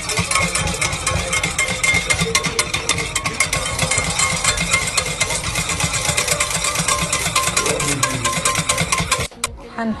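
Handheld electric whisk running in a steel saucepan of liquid, its motor whirring while the wire head rattles rapidly against the pot; it stops abruptly near the end.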